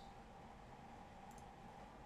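Near silence: room tone with a faint steady hum, and a couple of faint computer mouse clicks about a second and a half in.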